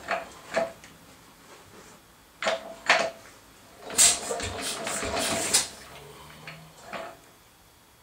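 Sharp metallic clanks and knocks from a 1937 Lister D stationary engine being worked on by hand, several single knocks with a short ringing note. In the middle comes a quick run of knocks, about five a second for a second and a half.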